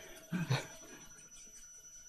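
Near-quiet room tone, broken about half a second in by a brief low vocal murmur of two short sounds from a person.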